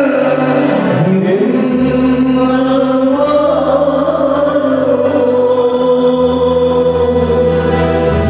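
A man singing a slow devotional chant through a microphone, drawing out long held notes that glide slowly in pitch, over steady low accompanying tones that change every few seconds.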